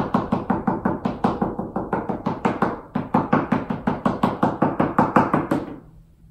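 A paintbrush loaded with acrylic paint is smacked rapidly against paper on a table to splatter paint, making sharp knocks about five a second. There is a short break about three seconds in, and the knocking stops just before the end.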